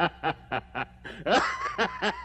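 Rapid laughter in short 'ha' bursts, about four a second, broken a little past the middle by a voiced sweep that rises and falls before the bursts start again.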